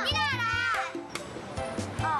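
Two children speaking together in high voices for about the first second, over background music of held notes that carries on alone afterwards.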